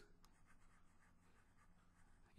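Near silence: room tone with faint scratching of a stylus writing on a tablet.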